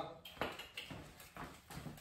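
Footsteps of a dog and a person on a tile floor: a few light, irregular clicks and taps.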